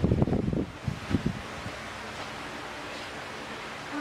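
Low rumbling buffeting, like wind on the microphone, for about the first second and a half, then a steady hiss of background noise.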